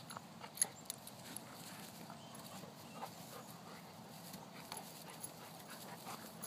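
Two dogs play-fighting: scuffling and mouthing sounds broken by short, sharp clicks, the loudest a little over half a second in and another just before one second.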